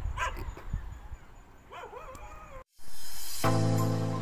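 A dog barking a few times in the distance over a low rumble of outdoor noise. About two-thirds of the way through, the sound cuts off suddenly and background music begins.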